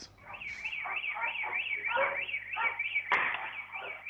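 Electronic alarm siren warbling rapidly, rising and falling about three times a second, with a single sharp click about three seconds in.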